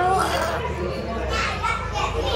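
Background voices, with children's chatter, briefly at the start and again faintly near the end, over a low steady rumble.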